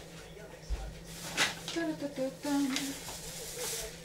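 A plastic bag of flour crinkling and rustling as it is picked up and handled, under a soft voice.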